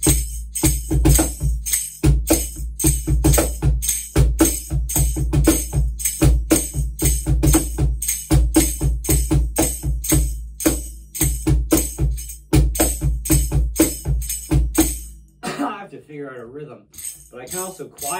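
Pearl Music Genre Primero cajon (MDF crate body, meranti front plate, built-in bass port) played by hand in a steady groove: deep bass strokes alternating with brighter slaps, with a foot tambourine worked by the heel jingling along. The playing stops about three seconds before the end, and a man's voice follows.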